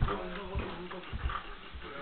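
Feet landing on a carpeted floor during dancing: several dull thuds, with a pair close together just past one second in.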